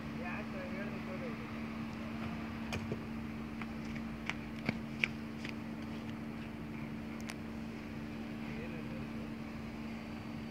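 A steady low hum holding two pitches, with a few faint sharp clicks and taps scattered through the middle.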